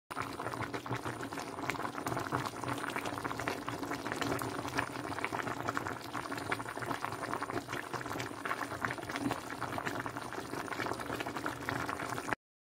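Pot of salmon sinigang broth at a steady boil: a continuous, dense crackle of small bubbles popping at the surface.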